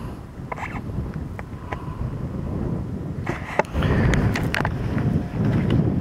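Wind buffeting the microphone: a low rumbling noise that grows louder a little under four seconds in.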